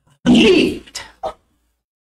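A man's non-speech vocal sound: one loud, rough burst about a quarter of a second in, followed by two short ones.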